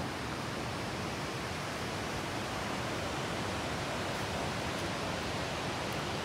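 Steady rushing of a river, an even hiss of flowing water.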